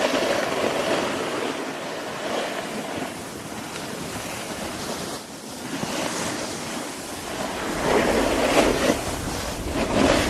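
Snowboards scraping and hissing over packed snow, with wind rushing over the helmet-mounted camera's microphone. It grows louder near the end, when a deep wind rumble joins the scraping.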